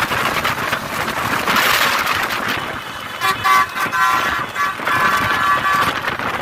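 Road and wind noise from travelling at speed beside a bus, then about three seconds in a vehicle horn sounds in several short blasts and one longer one.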